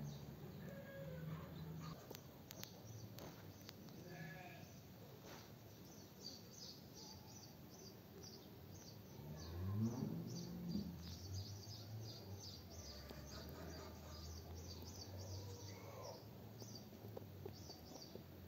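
Faint outdoor ambience with rapid, high, evenly repeated chirping, with one louder bleat from livestock about ten seconds in.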